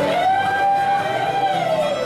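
Live contra dance band music with guitar: a melody note slides up, is held for about a second and a half, then glides down near the end.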